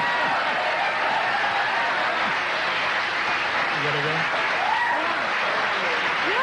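Studio audience applauding and cheering, a dense steady clatter of clapping with a few shouts on top, which began just before.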